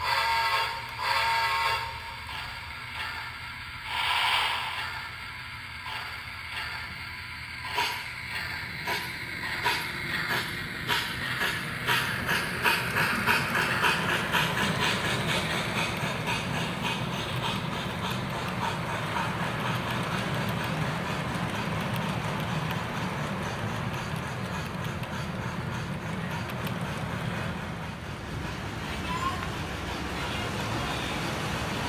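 S-gauge American Flyer FlyerChief Polar Express Berkshire locomotive running under power, its onboard sound system playing steam-locomotive sounds. A few separate sounds come in the first several seconds, then a rhythmic chuff that quickens as the train gathers speed, over the rumble of its wheels on the track.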